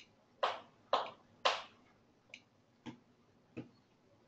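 Clicks at a computer desk. Three louder clicks come about half a second apart in the first second and a half, then a few fainter ones follow.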